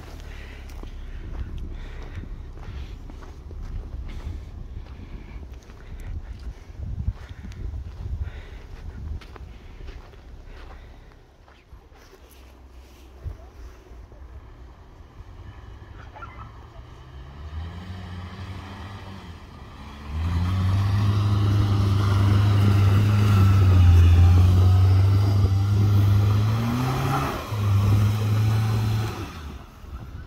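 A car engine running steadily under load for most of the second half, loud, its pitch climbing briefly near the end before it breaks off. In the first half there is a softer low rumble with scattered knocks.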